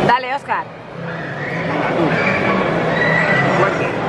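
A brief wavering vocal cry, its pitch shaking rapidly up and down for about half a second, right at the start; then the steady chatter of a crowded food court.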